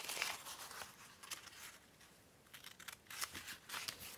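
Scissors snipping through scrunched kraft packaging paper, with the paper crinkling as it is handled. The snips and rustles come in short runs, with a brief lull about halfway through.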